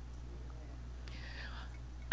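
A pause in the speech: quiet room tone with a steady low electrical hum, and a faint brief voice sound late in the pause.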